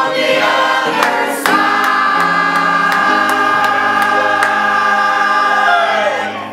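Church choir singing in harmony. About a second and a half in they move to one long held chord, the song's final chord, which is released near the end.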